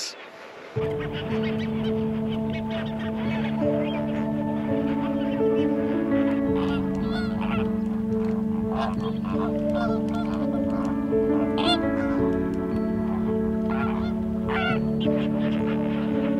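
A flock of flamingos calling, many short honks overlapping into a continuous chatter, over background music of sustained chords that change every few seconds. It starts just under a second in.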